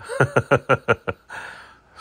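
A man laughing: a quick run of about six short chuckles in the first second, trailing off into a softer breath.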